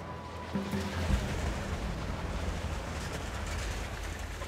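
Steady low rumble and rushing noise of concrete-pumping machinery delivering concrete through the placing boom and hose, under background music.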